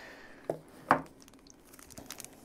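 Two light knocks followed by faint clicks, from handling a fountain pen's presentation box as the pen is lifted out of it.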